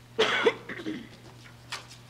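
A person coughing once, loudly, about a quarter of a second in, followed by a weaker trailing sound and a short faint one near the end.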